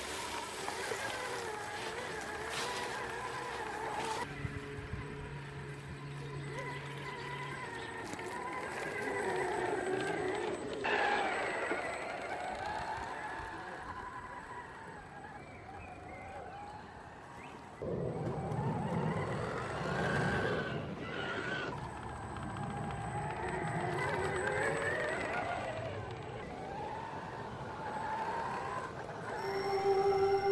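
Traxxas X-Maxx electric RC monster truck's motor and drivetrain whining, the pitch rising and falling as it speeds up and slows down. It turns louder with a deeper rumble about two-thirds of the way through.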